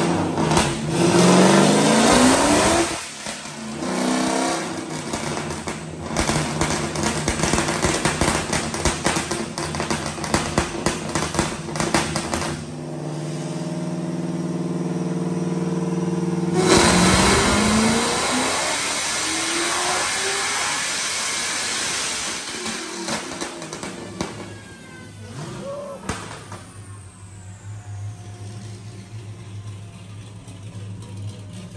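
Supercharged Hellcat V8 making a wide-open-throttle dyno pull, revving up and climbing in pitch, with a crackling, choppy stretch as it breaks up near the top. The tuners blame that break-up on low battery voltage starving the fuel pumps and weakening the spark. A second run-up comes about seventeen seconds in, then the engine backs off and a falling whine winds down near the end.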